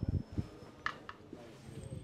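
Last couple of dhol drum beats in the first half-second, then a faint murmur of a gathered crowd with one sharp click just under a second in.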